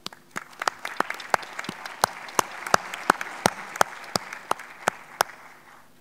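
Audience applauding, with many separate claps standing out. The applause dies away near the end.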